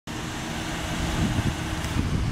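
Outdoor road-traffic noise: a steady low rumble with a broad hiss over it.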